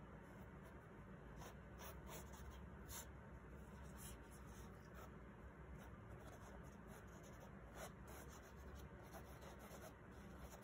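Faint, irregular rubbing and light scratchy strokes of a plastic-gloved hand smearing wet acrylic pour paint across a canvas.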